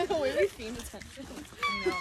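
Young women's voices making wordless, high-pitched vocal sounds, ending in a short, high squeal.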